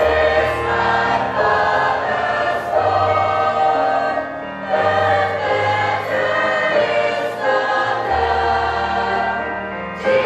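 A choir of children and young people singing together, the massed voices carrying continuous phrases.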